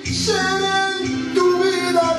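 A man singing a slow bolero into a handheld microphone over a karaoke backing track. There is a short break in the voice at the very start, then a sung line with held notes that shift in pitch.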